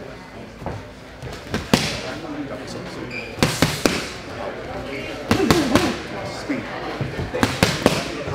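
Boxing-glove punches landing in quick combinations of two or three sharp smacks, each group a couple of seconds apart, over background voices.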